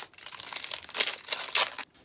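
Plastic foil wrapper of a trading-card booster pack crinkling as it is opened by hand, a quick run of irregular crackles.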